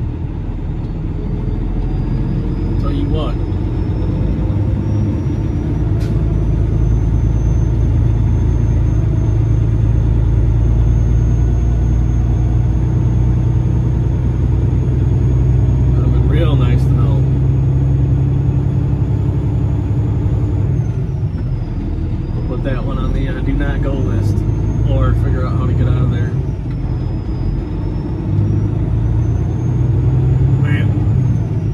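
Semi-truck diesel engine heard from inside the cab, pulling away and gathering speed, its drone building over the first ten seconds and then holding steady with a couple of short dips.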